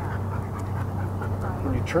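A dog panting over a steady low hum.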